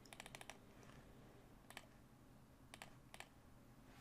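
Near silence with faint clicks from computer use: a quick run of about six clicks right at the start, then a few single clicks spaced out later.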